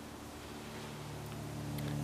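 Quiet background: a faint, steady low hum with light hiss, getting slightly louder near the end.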